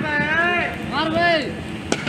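High-pitched voices calling out across the field, then a single sharp crack of a cricket bat striking the ball near the end.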